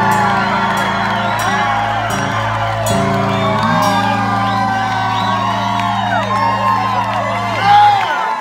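A live rock band's electric guitars and bass hold ringing closing chords that shift a few times, while the audience whoops and shouts over them. The held chords cut off sharply at the end.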